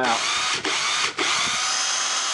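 DeWalt 18-volt cordless drill running on its NiCd battery pack, a pack that was dead and now holds enough charge to turn the motor. The motor sound cuts out briefly twice as the trigger is let off and squeezed again.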